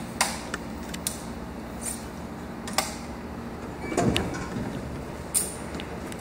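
Aluminium crutches tapping and clicking on a hard polished floor as someone walks on them: a few sharp, separate clicks, with a heavier thump and rumble about four seconds in.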